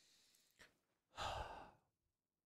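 A man sighing: one breathy exhale into a close microphone, about half a second long, starting just past a second in. A faint click comes shortly before it.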